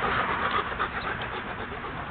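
A dog panting close to the microphone, a breathy noise that fades over the two seconds.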